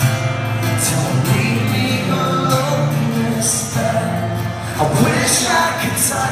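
Alternative rock band playing live on electric guitar and drums through a concert hall PA, heard loud from among the audience.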